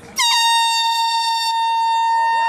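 Handheld compressed-air horn sounding one long, steady, high blast that starts a moment in and holds on, signalling the start of a road race.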